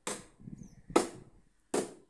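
Repeated sharp knocks, like hammer blows, about one every 0.8 seconds: three in all, the loudest about a second in.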